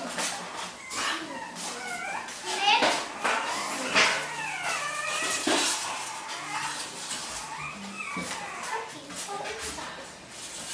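Children's voices mixed with French bulldog puppies yelping and whining, in short high calls that bend up and down throughout, with a few sharp knocks.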